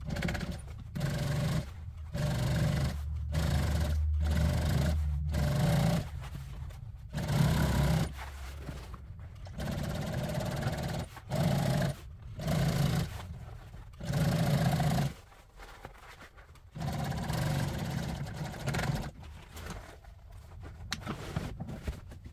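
Industrial sewing machine stitching a listing strip onto vinyl upholstery, running in about a dozen short runs with pauses between as the material is fed and repositioned.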